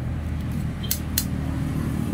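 Two quick, sharp snips of hand shears cutting flower stems, about a second in and a third of a second apart, over a steady low rumble.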